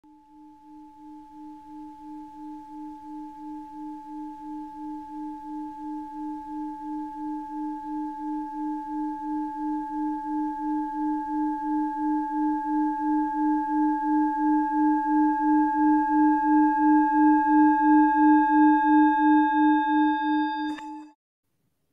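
A singing bowl's sustained hum, pulsing about twice a second and swelling steadily louder as higher overtones join in.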